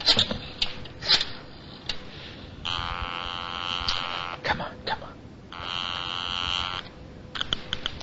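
A few sharp clicks, then a buzzing telephone ring sounding twice, each ring about a second and a half long with a short gap between, followed by a few more clicks near the end. It is a radio-drama telephone sound effect.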